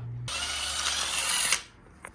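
Socket ratchet spun quickly on an engine accessory bolt: a fast, continuous ratcheting rattle lasting just over a second that stops abruptly.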